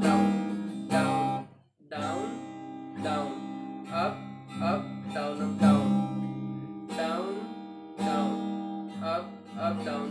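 Capoed acoustic guitar strummed in a down, down, up, up, down, up, down pattern through the chord changes of a C, A minor, F, G progression, with a brief break in the sound just under two seconds in.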